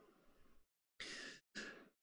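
Near silence broken by a man's two short, faint breaths about a second in, drawn between sentences of speech.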